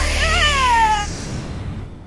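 A high, wavering wail that glides down in pitch and dies away about a second in, over a rushing whoosh and a low music bed.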